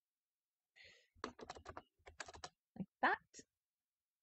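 Typing on a computer keyboard: a quick run of about ten keystrokes, entering values into a field, followed by a couple more keystrokes. About three seconds in there is a short wordless vocal sound.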